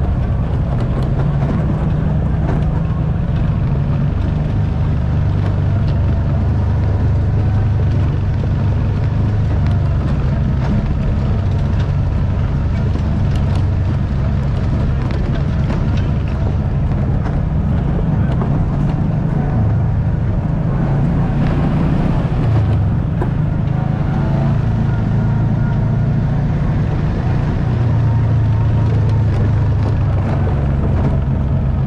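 Kawasaki Teryx side-by-side's V-twin engine running at trail speed on a rocky track, its pitch rising and falling with the throttle, with scattered knocks and rattles from the rough ground.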